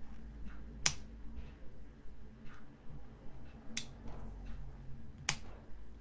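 Three sharp, short clicks a few seconds apart, over a faint low hum.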